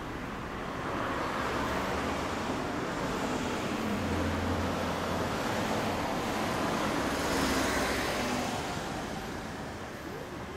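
Road traffic: vehicles passing on the road, building to a peak about seven and a half seconds in and easing off near the end.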